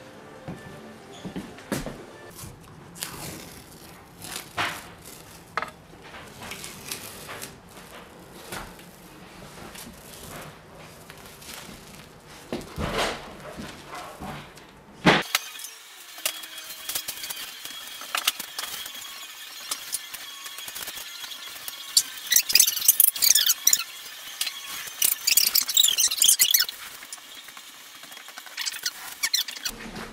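Painter's tape being peeled off a freshly painted wall: high, screechy ripping in bursts, thickest in the second half. It is preceded by faint scattered clicks and rustling.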